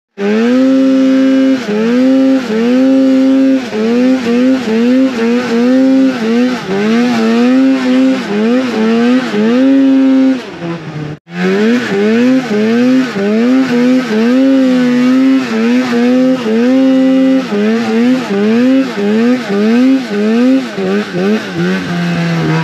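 Mountain snowmobile's two-stroke engine revving up and down again and again as the throttle is worked through the snow, its pitch climbing, holding and dropping about once a second. The sound breaks off briefly about halfway through.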